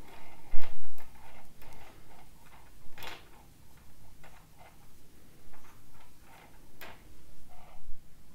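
Light, irregular clicks and ticks of metal interchangeable circular knitting needles knocking together as stitches are cast on by hand, with one louder knock about half a second in.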